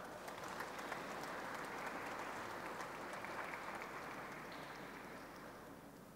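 An audience applauding steadily, slowly fading toward the end.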